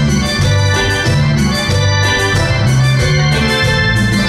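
Instrumental intro on a Yamaha electronic keyboard playing an organ-like sound, with electric bass guitar notes stepping along underneath.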